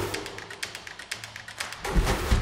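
Outro theme music of a TV programme: a heavy drum hit opens a quieter stretch of rapid, even ticking percussion, and another heavy hit lands at the end.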